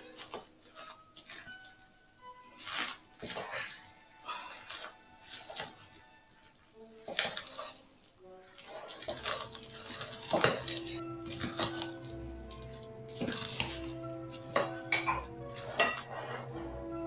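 A spatula scraping and knocking against a glass bowl in short, irregular strokes as beaten egg whites are folded into a cocoa cake batter. Soft background music comes in about halfway, and a few sharper clinks sound near the end.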